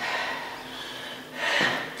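A person breathing hard during exercise, with a louder breath out about one and a half seconds in.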